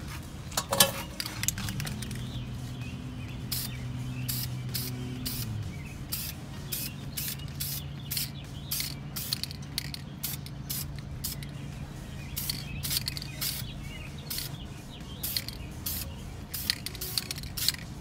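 Aerosol can of Dupli-Color caliper enamel spraying in many short hissing bursts, about one or two a second, as a light first coat goes onto a brake caliper. There is a sharp click under a second in and a steady low hum underneath.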